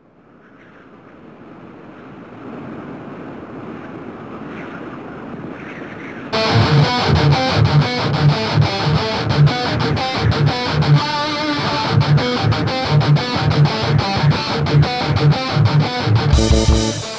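Opening of a heavy metal song: a hazy intro fades in from silence and swells for about six seconds. Then the full band comes in with distorted electric guitars and a steady drum beat.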